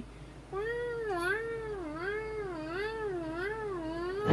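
A long, wavering cat-like yowl begins about half a second in, its pitch swinging up and down about five times.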